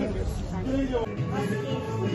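Indistinct talking, with background music coming in about a second in.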